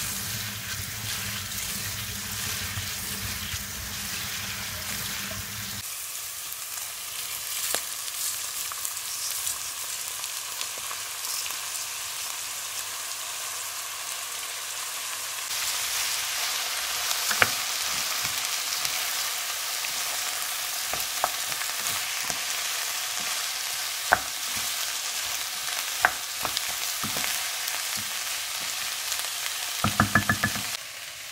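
Tap water running over lentils being rinsed by hand in a stainless-steel colander for about the first six seconds. Then lentils sizzling as they fry with sausages and diced carrot in a non-stick pan, stirred with a wooden spoon. The sizzle grows louder about halfway through, with a few sharp knocks of the spoon against the pan.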